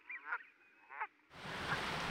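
Canada geese calling: three short, faint calls in the first second or so. A steady hiss of background noise comes up near the end.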